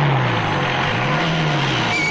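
Jeep engine revving as it drives in fast, its pitch falling, rising again about a second in, then falling, over a loud rush of engine and tyre noise.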